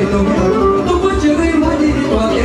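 Loud live Romanian lăutari band music: a fast folk dance tune with a quick, steady bass beat of about four a second under a running instrumental melody.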